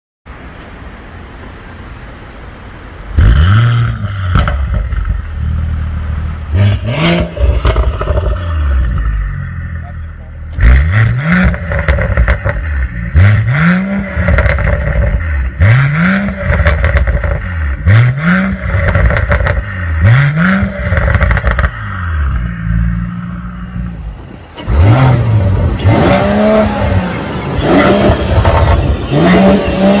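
Mercedes-AMG CLS53's turbocharged 3.0-litre inline-six breathing through a Fi valvetronic cat-back exhaust with sport downpipes. It starts up about three seconds in with a loud rising flare and settles to idle, then is blipped in a long string of short revs roughly every second and a half, each a quick rise and fall in pitch. It is louder again over the last few seconds.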